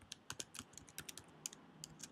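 Computer keyboard being typed on: a faint, quick run of keystrokes, several a second and unevenly spaced.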